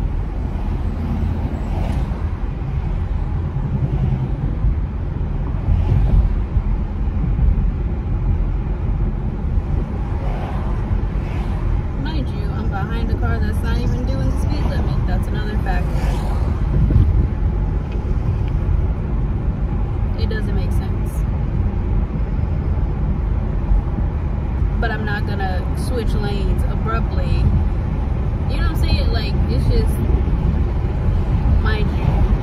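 Steady low road and engine noise of a moving car, heard from inside the cabin.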